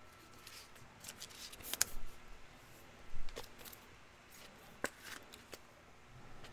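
Trading cards handled by hand on a table: scattered soft rustles and light sharp clicks, with a few louder clicks about two, three and five seconds in.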